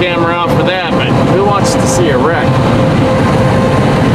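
Steady road and wind noise inside a car cruising at highway speed, with a constant hum under it.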